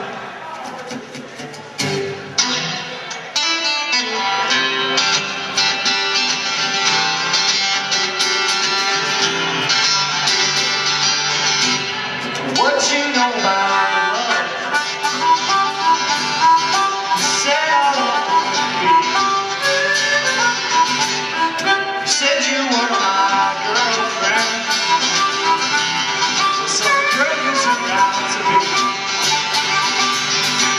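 Live acoustic band: acoustic guitars strumming chords with a harmonica playing the lead over them, the music building up about two seconds in.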